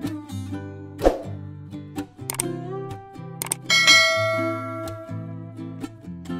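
Background instrumental music with held notes, broken by a few sharp clicks in the first half and a bright bell-like ding about four seconds in that rings on for about a second.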